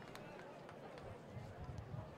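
Faint murmur of ballpark crowd and distant voices picked up by the open broadcast microphones, with a few soft low thumps near the end.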